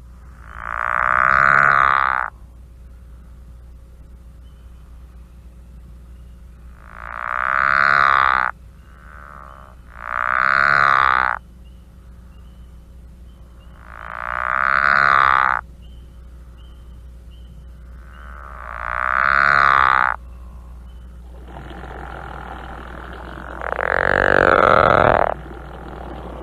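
Pickerel frog calling: a low, steady snore about one and a half to two seconds long, given six times at gaps of a few seconds, each call swelling in loudness and then stopping abruptly.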